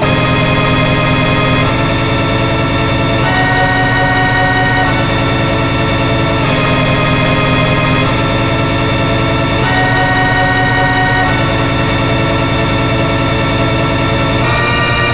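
A black MIDI rendered through a piano soundfont with heavy reverb: thousands of piano notes a second blur into a loud, continuous ringing chord mass. The chord shifts to a new one about every second and a half.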